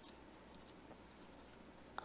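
Near silence, with faint rustling of origami paper as fingers curl back the petals of a folded paper rose.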